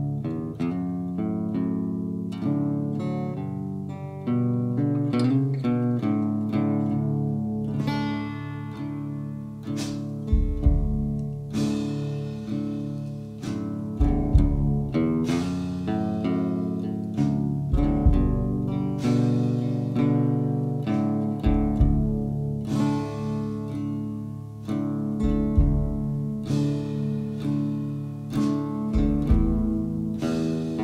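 Instrumental intro of a song: acoustic guitar picking and strumming, with deep low notes joining about ten seconds in.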